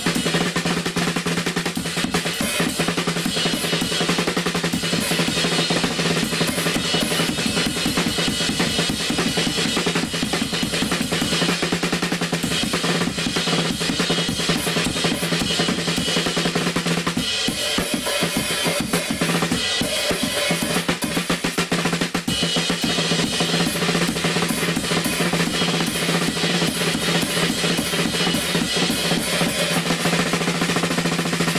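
Solo drum kit performance on a compact DW kit with Zildjian cymbals: steady, busy playing on snare, bass drum, hi-hat and cymbals, with rolls and rimshots. A little past halfway the pattern briefly changes and thins out before the full groove returns.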